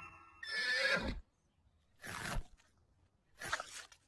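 Cartoon horse whinnying, followed by two shorter rough sounds about a second and a half apart.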